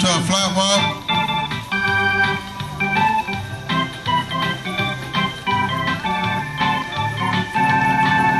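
Organ music, held chords with a melody changing note every half second or so.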